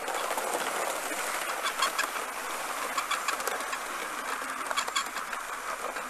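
Gauge 1 live-steam model of a Bulleid Pacific locomotive and its coaches running round the track: a steady hiss and rumble of the moving train with a few sharp, irregular clicks.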